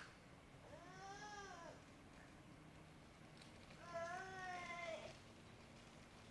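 A faint voice away from the microphone says two drawn-out words, each about a second long: one about half a second in and one past the middle. A short click comes right at the start.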